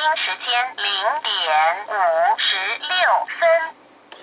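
The voice chip of a Chinese four-digit LED clock kit announcing the time through its small built-in speaker, in what is practically certainly Chinese. The voice is thin, with no bass, and stops just before the end.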